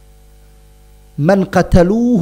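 Steady electrical mains hum picked up by the lecture microphone during a pause, then a man's voice speaking into it from a little past halfway.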